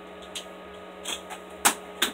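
Beyblade parts being handled and fitted back together: a few faint plastic clicks and one sharp click about a second and a half in, over a steady low electrical hum.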